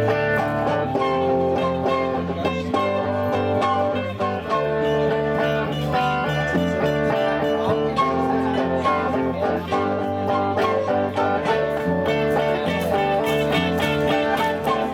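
Small band playing an instrumental passage live: flute playing the melody over strummed acoustic and electric guitars.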